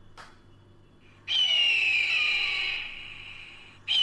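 Screech of a bird of prey, played as a sound effect: one long call falling slightly in pitch and fading, starting about a second in, with a second identical call beginning right at the end.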